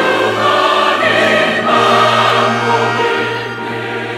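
Large mixed church choir of men's and women's voices singing a hymn in Korean, swelling and then easing a little near the end.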